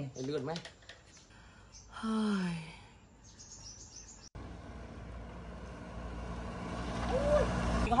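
A short shouted "hey!" and faint bird chirps, then, after a sudden cut, a motorbike engine running with a steady low hum that grows gradually louder.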